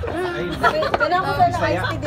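A group of people talking, with several voices chattering over one another.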